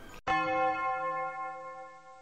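A bell-like chime struck once about a quarter second in, then ringing on and slowly fading: an edited-in transition sound marking the start of a new section.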